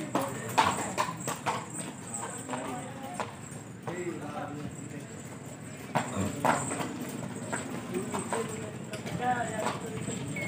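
A horse's hooves clip-clopping as it walks on a packed-earth floor, in uneven clusters of steps, strongest near the start and again about six seconds in.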